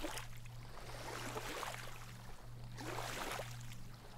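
Small waves of the calm Baltic Sea lapping on a sandy, stony shore, washing in three times, over a steady low hum.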